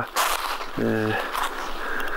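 A man's voice: a short, steady hesitation sound in the middle of a sentence, over faint outdoor hiss.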